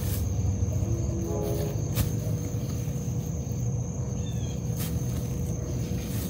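Outdoor background of a steady high-pitched insect drone over a low rumble, with a few faint clicks.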